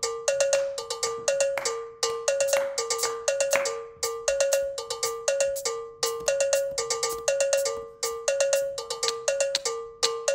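Electronic cowbell-like synth tone from a keyboard-driven production setup, playing a short riff on two alternating pitches that loops every two seconds, each strike sharp and quickly fading. A brief hiss-like wash rises over the pattern between about two and four seconds in.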